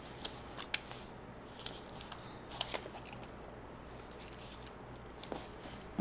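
Paper cutouts being handled and glued into a notebook: a glue stick rubbing on paper and paper rustling, with a handful of sharp light clicks and taps, most of them in the first three seconds.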